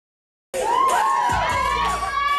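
Audience cheering, many high voices yelling together, cutting in suddenly after dead silence about a quarter of the way in.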